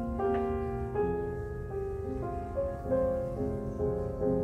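Solo grand piano playing a slow, gentle classical piece, with sustained notes and chords changing about every half second.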